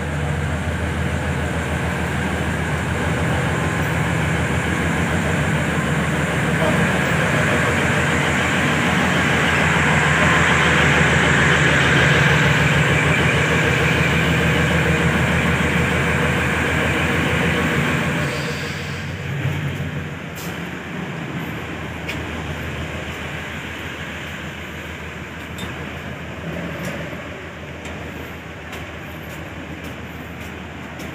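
Diesel railcar engines of a Prameks train idling with a steady deep drone under a rushing hiss, loudest around the middle. About 18 seconds in the sound drops sharply and turns duller as it is heard from inside the carriage.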